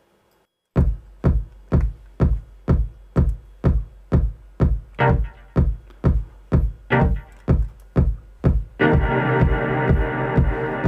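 Drum-machine kick playing a steady four-on-the-floor beat, about two beats a second, starting just under a second in. Near the end a sustained synth chord drenched in long reverb comes in over the kick.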